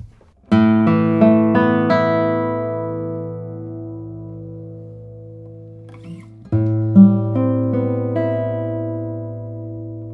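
Amélie Bouvret 2022 classical guitar, cedar top with Madagascar rosewood back and sides, played solo. About half a second in comes a low bass note with a quick run of plucked notes, left to ring and fade; a second such phrase begins about six and a half seconds in.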